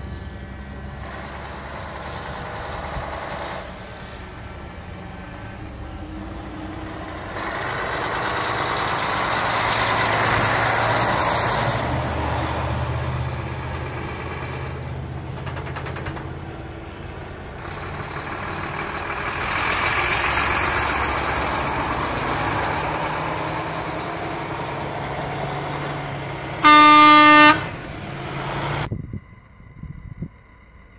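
Convoy of trucks driving past one after another, engine and tyre noise swelling and fading as each goes by. Near the end a truck sounds one loud horn blast, under a second long.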